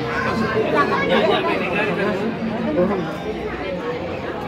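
Several people talking at once: overlapping conversational chatter, with no single voice standing out.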